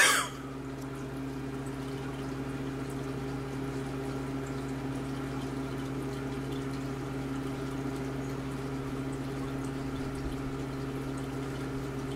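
Aquarium rock bubbler and its pump running: a steady electric hum with water bubbling and trickling in the tank. A cough right at the start is the loudest sound.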